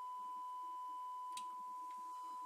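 Steady 1 kHz sine test tone from a Neutrik A2 audio analyser, run through a reel-to-reel tape recorder while its level is set for about 1% distortion. A faint higher tone above it drops out after a single click about one and a half seconds in.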